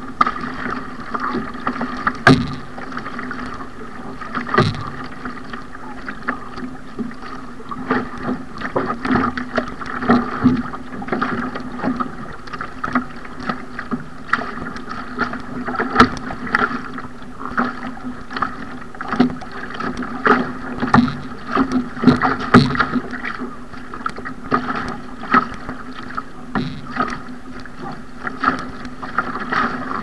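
Ocean ski (surfski) paddled through choppy sea: water rushing along the hull, with frequent irregular sharp slaps and splashes of the hull and paddle blades on the chop.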